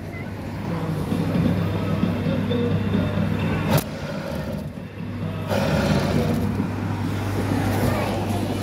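Coin-operated kiddie ride running: a steady low motor hum with its tune playing faintly, and a single sharp knock just before four seconds in.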